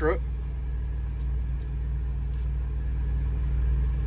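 Diesel engine of a 2022 International semi truck idling steadily, a low even rumble heard from inside the cab.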